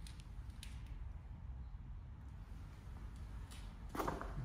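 Quiet room tone: a steady low rumble with a few faint clicks and creaks of a handheld camera being moved.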